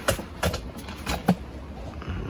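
A few short, light clicks over a steady low hum: three faint knocks in two seconds, with no shot.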